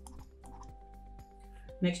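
A scatter of light, quick clicks under faint background music with a few steady held notes. A spoken word comes in just before the end.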